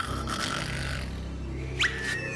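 Cartoon snoring of a sleeping character: a low, rasping snore, topped near the end by a quick rising whistle.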